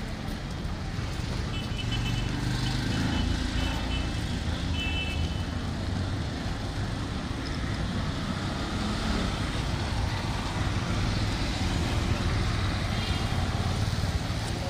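Road traffic on a city street: cars and a motorized three-wheeler running past steadily. A few short high-pitched tones sound about two to five seconds in and again near the end.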